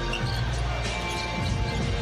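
A basketball being dribbled on a hardwood court, a few bounces, with music playing underneath.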